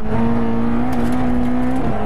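Engine of a Fiat 600 Kit rally car at full throttle, heard from inside the cabin. Its note creeps slowly up in pitch and dips briefly near the end.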